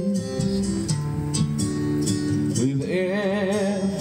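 Acoustic guitar strumming and picking chords between sung lines of the song. About two-thirds of the way in, a male voice comes in on a held, wavering note.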